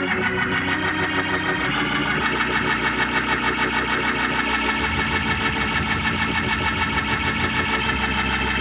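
Gospel church band music led by a Hammond-style organ holding sustained chords with a fast wavering tremble. A deep bass line comes in about a second and a half in.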